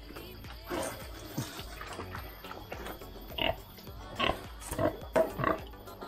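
Hungry pigs in their pens calling in short, separate bursts several times, noisy at feeding time.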